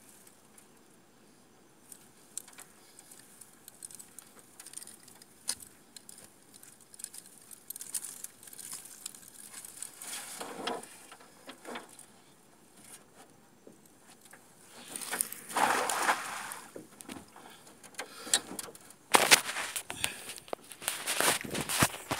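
A nylon cast net being handled and gathered into the hands, its lead sinkers clinking together like jangling keys and its mesh rustling in scattered small clicks. The rustling and clattering grow louder twice in the second half, around fifteen seconds in and again near the end.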